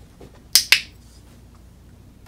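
Dog-training clicker: two sharp clicks in quick succession about half a second in, marking the puppy's correct down for a reward.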